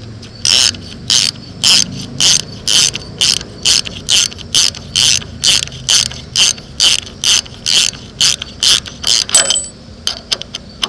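Hand ratchet wrench turning a bolt in a radiator's drain-plug hole: a quick run of ratchet clicks on each back-swing, repeated steadily about twice a second and speeding up a little toward the end.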